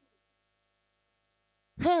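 Near silence with a faint electrical hum, then a man's amplified voice starts speaking near the end.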